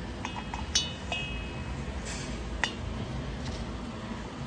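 Light metallic clinks of a two-stroke chainsaw piston knocking against its cylinder as it is fitted up into the bore: about four taps, the first three with a brief ring after them.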